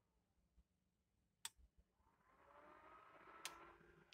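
Near silence with two faint clicks, one about a second and a half in and one near the end, and a faint whine rising in pitch over the second half.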